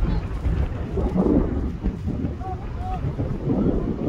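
Wind buffeting the microphone with a heavy, steady low rumble, over faint distant voices calling out on the field.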